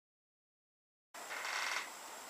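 Silence, then about a second in, low room noise with a faint steady high whine, and a short burst of hiss lasting about half a second.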